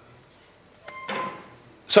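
Quiet lecture-hall room hiss with a single faint key click about a second in, as the presentation laptop advances a slide, followed by a short soft rustle; a man's voice starts right at the end.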